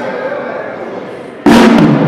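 Murmuring voices in a large hall, then about one and a half seconds in a brass band comes in all at once on the conductor's downbeat, with brass, bass drum and drum kit, opening a medley of salays.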